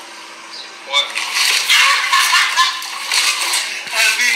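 A cake smashed into a face with a sharp slap about a second in, then loud shouting and commotion, heard thin and tinny through a phone's speaker.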